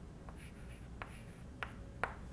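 Chalk writing on a blackboard: faint scratching strokes, with two sharp taps of the chalk on the board in the second half.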